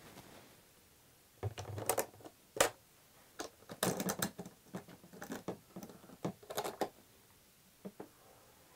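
Metal toggle latches on a plastic electrical enclosure being unclipped by hand and the lid starting to swing open: a string of sharp clicks and clacks from about a second and a half in, with a last click near the end.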